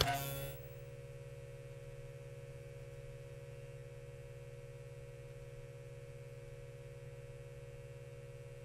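Neon-sign sound effect: a short burst as the sign lights up, then a steady electrical hum of buzzing neon.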